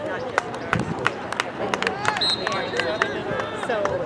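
Spectators talking on the sideline of an outdoor youth soccer match, the words too far off to make out, with scattered sharp clicks and knocks. A thin high tone starts about halfway through and holds.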